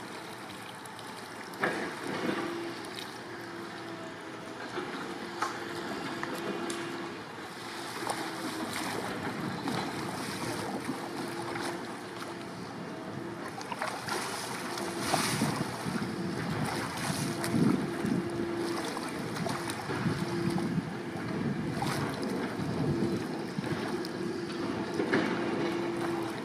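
Water splashing and lapping around an Epic V7 surfski as the paddle dips and the boat is tipped over, with short splashes now and then and wind on the microphone.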